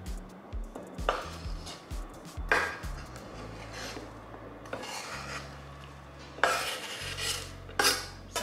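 A knife blade scraping chopped vegetables off a wooden cutting board into a glass bowl: several separate scraping strokes, the longest a little over halfway through.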